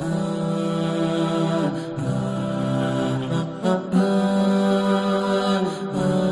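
Calm vocals-only nasheed: voices singing long, held notes that change slowly, without instruments.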